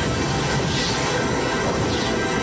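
Film trailer soundtrack: a loud, steady rushing noise with music faintly underneath, leading into the title card.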